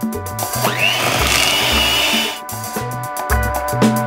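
Electric hand mixer beating mascarpone in a stainless steel bowl: the motor spins up with a rising whine about half a second in, runs steadily, and cuts off suddenly a little past halfway. Background music with a steady bass line plays throughout.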